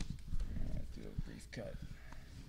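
Faint handling of a vinyl LP as it is set onto a turntable platter, with a soft click about one and a half seconds in, under faint murmured voices.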